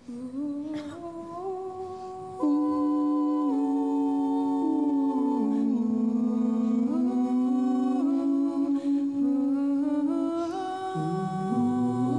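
Small a cappella vocal ensemble singing wordless held chords in close harmony, the chord shifting every second or two. It starts softly and swells louder about two and a half seconds in, and a low bass voice joins near the end.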